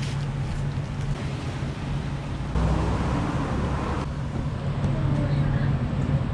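Road traffic noise: a steady low engine hum, swelling louder as a vehicle passes about two and a half seconds in.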